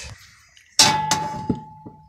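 A sharp metal clang about a second in, leaving one clear ringing tone that hangs on for over a second, a 'ding ding ding' from the sheet-metal fan frame being struck by a hand tool; two lighter knocks follow while it rings.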